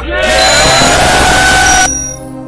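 Loud rush of hiss-like noise with a faint rising tone, the transition effect of a video intro graphic. It cuts off sharply near the end into soft ambient music.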